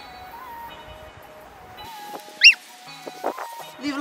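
A tabby cat meows once, a single short high call about halfway through, over background music.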